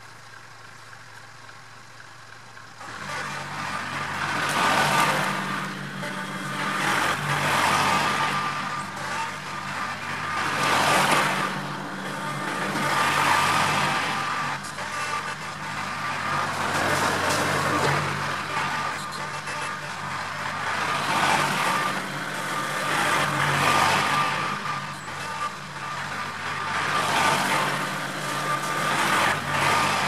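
A tractor engine comes in about three seconds in and runs steadily, swelling and easing every few seconds as the front-end loader works mulch.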